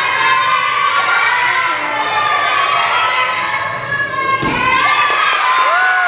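Many children's voices shouting and cheering for a gymnast on the uneven bars. A single thud about four and a half seconds in is her dismount landing on the mat, and then loud cheering shouts follow.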